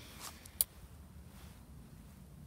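A single sharp click about half a second in, just after a soft rustle, over a faint low rumble.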